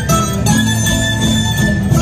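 Andean carnival dance music from Ayacucho, led by plucked strings over a steady beat of about two strokes a second.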